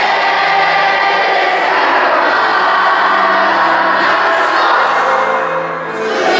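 A group of children singing a song together with long held notes.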